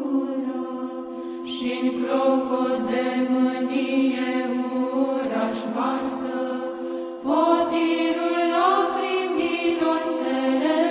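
Slow Orthodox church chant: voices singing a drawn-out melody over a steady held drone note, with a louder new phrase coming in about seven seconds in.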